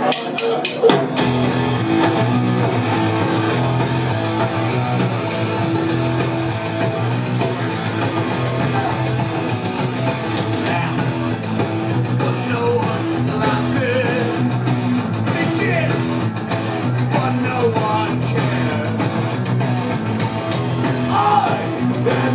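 Live punk rock band playing loud through a PA: electric guitar, bass and drum kit, the full band coming in about a second in and driving on steadily.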